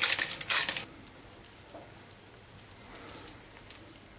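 Hand-twisted spice grinder grinding over a frying pan, a crackly rasping crunch of rapid fine strokes that stops a little under a second in; after that only a few faint small ticks.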